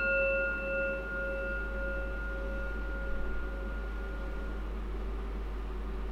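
A metal chime, struck once just before, rings with a clear, bell-like tone that slowly dies away over about four seconds, the highest notes fading first. It marks the start of the story.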